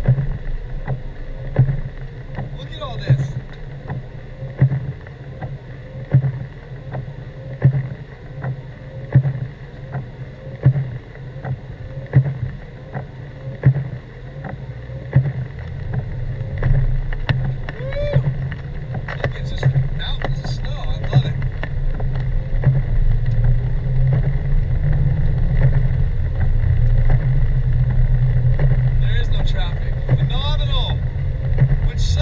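Car cabin sound on a snowy road: the engine and tyres run with a low rumble while the windshield wipers sweep about every second and a half. The rumble grows louder and steadier about halfway through, and a few brief squeaks come in along the way.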